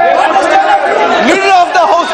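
Several voices talking over one another in a large hall, the din of an uproar in a parliamentary chamber.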